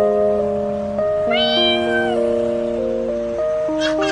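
A cat meowing once, a single call just under a second long, about a second in. Background music with sustained chords plays throughout.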